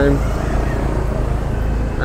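Steady low drone of a slow-moving car, with faint street noise over it.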